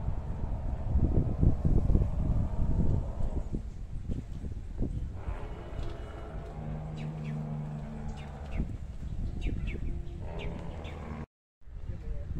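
Outdoor park ambience: a low rumble of wind and handling noise on a handheld microphone, strongest in the first few seconds. Small birds chirp in short high notes through the second half, over a steady low hum around the middle. The sound drops out for a split second near the end.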